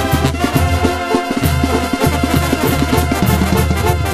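Mexican banda music in an instrumental passage of a corrido: brass over a pulsing bass line and drums, with no singing.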